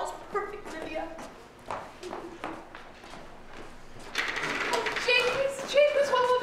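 Actors speaking lines in a stage play, with short pauses between phrases.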